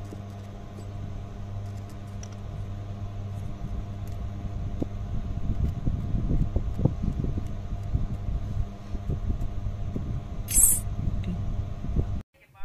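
A blade scraping enamel insulation off thin copper winding wire on a small DC motor rotor, heard as a short sharp scrape near the end. It is set in irregular low crackling handling noise that grows through the second half, over a steady low hum.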